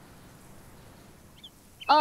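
Faint, steady room tone through a pause, then a voice starts speaking just before the end.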